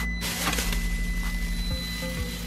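Plastic fridge crisper drawer pulled open, a short sliding rush near the start, over background music and a steady high electronic tone.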